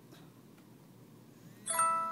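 A bell-like chime struck once near the end, a clear ringing tone that fades away, over quiet room noise.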